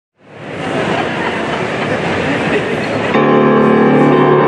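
A dense rushing noise fades in at the start, then about three seconds in it cuts off abruptly and a grand piano starts playing a sustained chord.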